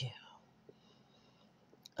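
A pause in spoken narration: the tail of a word at the start, then faint background hiss with a couple of tiny clicks, before the voice returns at the very end.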